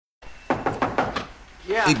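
A quick series of about five knocks on a door, evenly spaced over under a second, followed by a man starting to speak.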